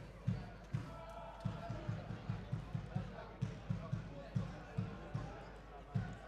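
A football supporters' bass drum beating a steady rhythm of dull low thumps, about two to four beats a second.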